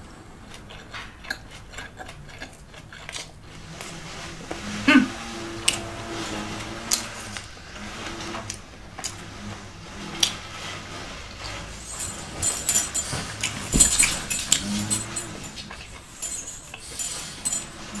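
Close-up chewing of a carne asada taco on a soft corn tortilla: wet, irregular mouth clicks and smacks, with a few short closed-mouth hums of enjoyment.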